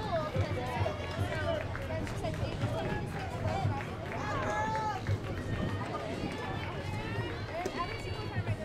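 Several voices calling out and cheering at once, overlapping and some held as long calls, with no clear words.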